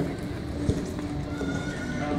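Barrel-racing horse galloping flat out on arena dirt: hoofbeats, with one sharp thud about two-thirds of a second in, over a background of voices.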